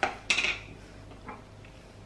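A sharp click, then a short noisy rustle and a few faint taps: a kimchi jar and its plastic lid being handled on a wooden cutting board.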